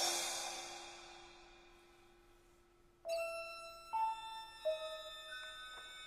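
Modernist orchestral music. A loud, noisy swell dies away over about three seconds above a held low note. About halfway in, bright struck bell-like notes enter suddenly, several in turn, each ringing on under the next.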